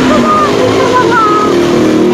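Loud, steady motor-vehicle traffic noise, with an engine's steady hum setting in about one and a half seconds in, over a woman's faint, low speech.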